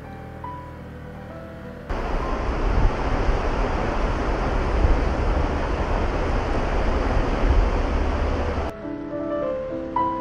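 Waterfall: a steady rush of falling water with wind buffeting the microphone. It cuts in about two seconds in and stops abruptly near the end.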